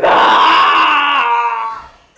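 A woman's long, loud drawn-out vocal cry, held for nearly two seconds before it fades.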